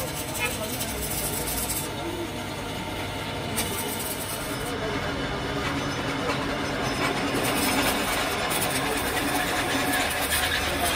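Stick (arc) welding a machined spindle onto a steel trailer axle tube: the welding arc runs as a steady, even hiss that grows a little louder in the second half.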